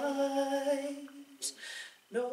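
A woman singing unaccompanied, holding one steady note for about a second before it fades. A short breath follows near the end, before the next phrase.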